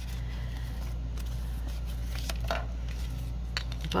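A few light paper rustles and soft taps as a small paper collage card is handled and laid down on a paper-covered craft table, over a steady low hum.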